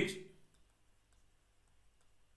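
Faint, sparse clicks of a stylus tapping on a digital drawing tablet while a word is handwritten, after the last syllable of a spoken word fades out in the first half-second.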